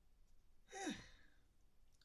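A man's single voiced sigh about a second in: a short breathy exhale falling steeply in pitch, with near silence around it.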